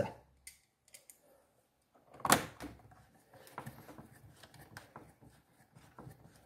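Hand screwdriver driving a screw into the plastic housing of a pressure-washer spray gun: one sharp click a little over two seconds in, then faint irregular ticks and scrapes as the screw is turned.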